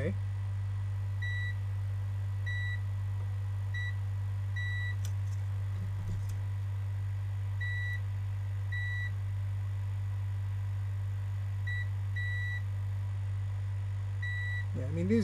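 Multimeter continuity beeper giving about eight short, high beeps at irregular intervals, with a pause in the middle, each beep signalling that the probes have found a connection between points on a circuit board. A steady low hum runs underneath.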